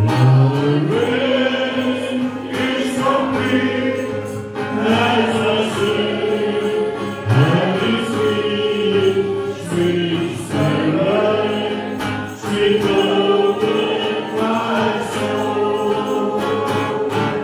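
A group of voices singing a slow worship song in long, held notes that slide from one pitch to the next, over a steady instrumental accompaniment.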